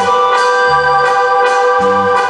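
Live band music: a sustained electronic keyboard chord held over changing bass notes, with a few drum hits.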